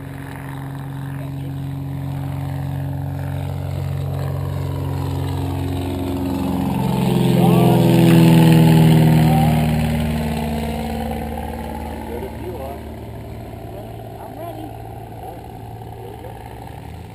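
A small plane's engine passing by. It grows louder to a peak about eight seconds in, its pitch dropping as it passes, then fades away.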